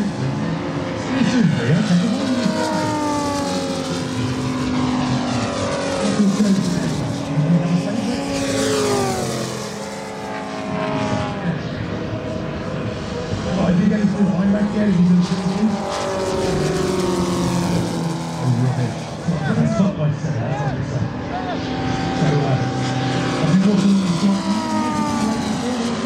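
Several giant-scale model warbirds with Moki radial petrol engines flying past together at full power. Their engine notes overlap and slide in pitch, mostly falling, as each plane passes by.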